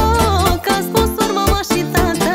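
Romanian party-band music with accordion, saxophone, violin and keyboard over a quick, steady beat, a wavering melody line carrying the tune.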